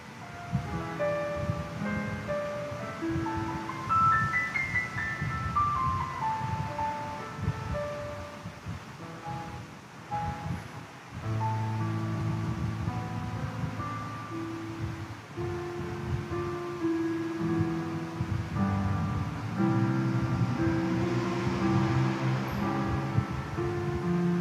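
Slow instrumental keyboard music: a melody of held notes over sustained low chords, fuller in the second half.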